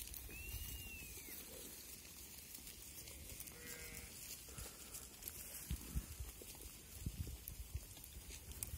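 Faint bleating from a grazing flock of sheep and goats, with one short wavering call around the middle. A brief high rising-and-falling note sounds near the start, and low bumps come later.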